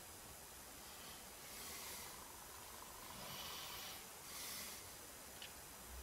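Faint scratchy hiss of a graphite pencil shading on Bristol board, the pencil held on its side, in three short strokes.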